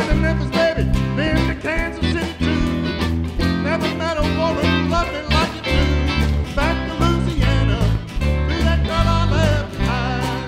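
Live band music with guitars, bass, drums and keyboard playing a country-blues rock groove, a lead line bending its notes over a steady beat.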